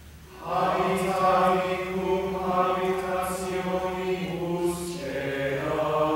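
A small choir chanting Latin plainchant in unison, the voices coming back in after a short breath about half a second in and holding a steady reciting note that steps down to a lower pitch near five seconds in.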